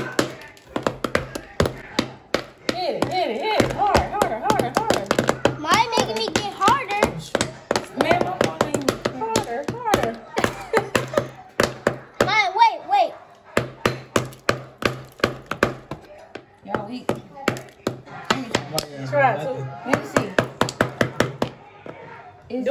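Small mallets tapping a hard, chilled chocolate heart shell over and over in quick runs of sharp knocks, the shell not giving way. Children's excited voices sound over the knocking.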